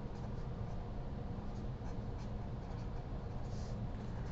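Felt-tip marker writing on paper: faint, short strokes of scratching over a steady low hum.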